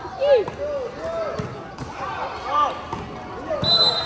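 Volleyball being struck during a children's rally, a few sharp hits, with young players' voices shouting calls throughout. A brief high whistle sounds near the end.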